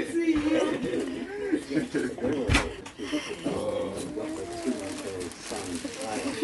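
Indistinct, unworded voices of people in a small room, with a single sharp click about two and a half seconds in.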